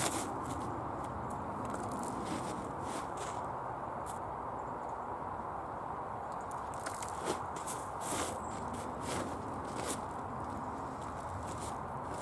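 Hands raking and sifting through loose, damp compost on a plastic tarp: a soft crumbly rustle with scattered light crackles and clicks, over a steady background hiss.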